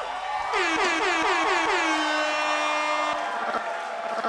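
Keyboard synthesizer playing a quick run of about six notes, each bending down in pitch, then holding one long note that cuts off near the end.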